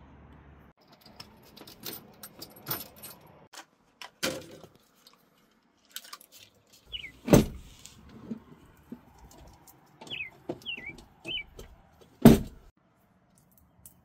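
Small clicks, rattles and metallic handling noises of wires and hand tools being worked at an air handler's control wiring, with two sharp knocks about seven and twelve seconds in and a few short high squeaks.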